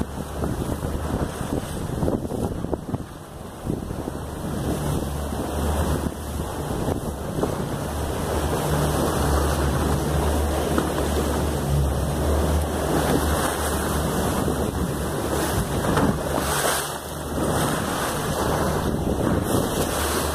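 Wind rushing over the microphone, with a steady low rumble underneath.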